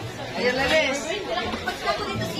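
Several people talking at once in a busy eating place: background chatter with no clear words.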